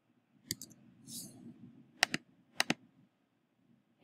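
Sparse computer keyboard keystrokes and mouse clicks: one click about half a second in, then two quick double clicks around two and two and a half seconds in, with a brief soft hiss between them.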